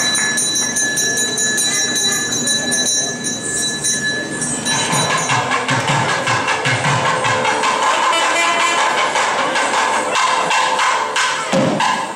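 Thavil drum and nadaswaram temple music that starts about five seconds in: regular drum strokes under a reedy, pitched melody. Before the music, a steady high-pitched tone sounds.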